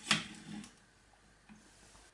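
Brief plastic knock and rustle as an open PIR detector housing is handled and set down on a desk, with a smaller handling sound about half a second in, then near silence.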